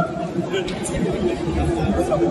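Low, indistinct chatter of several voices in a large hall, with no single clear voice.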